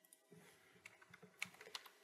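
Faint, irregular clicking of computer controls being worked: a handful of light, sharp clicks from about a second in, over low room noise.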